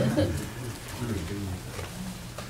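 A person's low hummed murmur with the lips closed, like an assenting "mm-hmm", in a pause between sermon speech.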